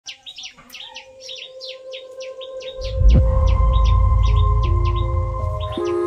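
Birds chirping in quick, repeated, falling chirps. About three seconds in, a loud deep rumble suddenly joins them, and near the end music with held notes that step in pitch comes in.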